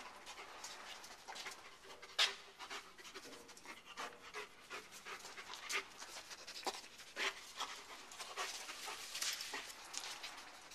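Working search dog breathing hard in quick, irregular panting and sniffing breaths as it searches nose-first around a truck wheel. A single sharp click comes about two seconds in.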